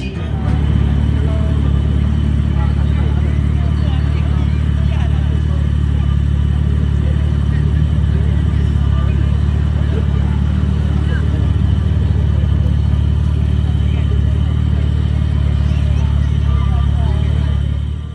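A car engine idling steadily with a deep, low exhaust note, with people talking in the background.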